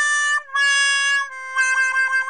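Comic 'sad trombone' sound effect: held brassy notes stepping down in pitch, the last one drawn out with a fast wobble.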